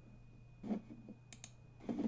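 Two quick computer mouse clicks a little over a second in, over a faint steady low hum.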